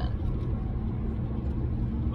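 Steady low rumble of a truck on the move, engine and road noise heard from inside the cabin.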